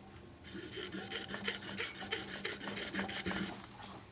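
A rapid, irregular rasping scrape that starts about half a second in and fades out near the end, about three seconds long.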